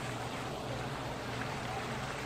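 Steady rush of water from the Rain Oculus, a large bowl-shaped whirlpool fountain, swirling around the bowl and draining through its central opening, with a low steady hum under it.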